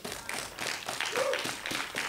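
Audience clapping, with a short cheer about a second in.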